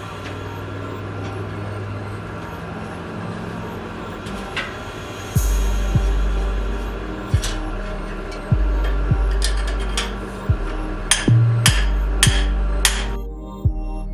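Hand-hammer blows driving a heated guard down onto a sword blade held in a vise (hot fitting the guard): a series of sharp metal strikes in the second half, about half a second apart, over background music.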